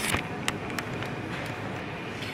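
Clear plastic flower sleeves around potted orchids crinkling a few times as they are handled, over a steady hum of indoor store background.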